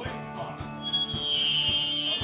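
Live rock band playing with electric guitars, bass and drum kit, the drums keeping a beat of about two hits a second. A high sustained note comes in about a second in and holds to the end.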